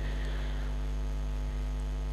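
Steady electrical mains hum carried through the microphone and sound system: a low, unchanging buzz with no speech over it.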